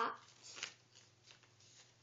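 Faint rustling and crinkling of a sheet of paper being handled and folded by hand: a few short soft strokes, the clearest about half a second in.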